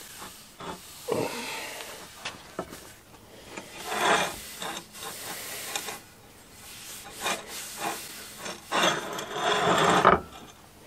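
A cloth rag rubbed in strokes along a wooden axe handle, wiping on a finish coat, with a few light knocks of the handles on the bench between strokes; the strongest stroke comes near the end.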